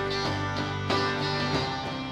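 Worship band playing a song: strummed acoustic guitar over keyboard chords and electric bass, with a strummed beat about every two-thirds of a second.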